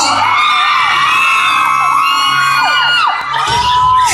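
Concert audience screaming and whooping: many high, held screams overlap and trail off in falling glides. Low music notes sound steadily underneath, and the screams dip briefly near the end before rising again.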